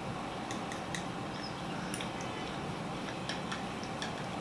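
Quiet room tone with a few faint, sharp clicks of metal forks against plates while eating.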